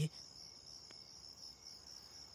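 Faint, steady high-pitched chirping of crickets in a night-time outdoor ambience, with a single faint click about a second in.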